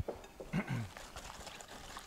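Hand whisk beating a runny batter of oil, sugar and eggs in a bowl, a faint wet stirring, with a brief murmur from a voice about half a second in.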